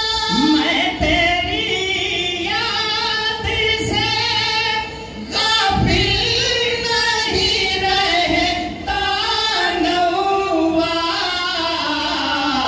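Men singing an Urdu devotional song (naat) through a PA system, high voices with long, wavering held notes and a brief breath pause about five seconds in.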